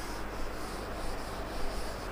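Felt blackboard duster rubbing across a chalkboard in a series of short scraping strokes, erasing chalk writing, with chalk starting to write on the board near the end.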